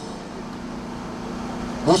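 Steady street traffic noise with a constant low hum, in a gap between phrases of a man's amplified speech.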